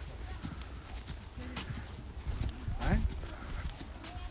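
Horses walking on a dirt trail, their hooves clip-clopping in an uneven pattern of strikes from several animals.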